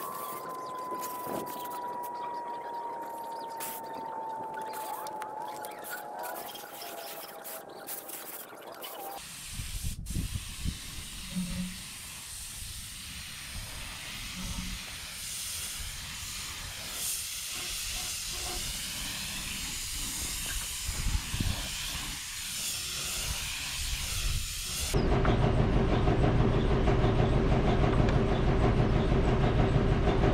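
Aerosol spray-paint can hissing as steel roller stands are sprayed black, with wind rumbling on the microphone. About 25 seconds in, a louder steady low mechanical hum takes over.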